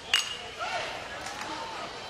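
A baseball bat striking a pitch once, a sharp ping with a brief metallic ring, as the batter fouls it off, followed by faint voices from the crowd.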